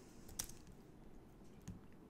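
Two faint computer clicks over quiet room tone, a sharper one about half a second in and a softer one near the end, from working the mouse and keyboard at the desk.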